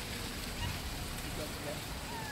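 Steady outdoor city background: a low hum of distant traffic with a faint hiss, and a faint brief sound about one and a half seconds in.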